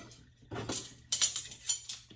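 Metal cutlery and dishes clinking and scraping in a stainless steel sink during hand dish-washing, in three short bursts.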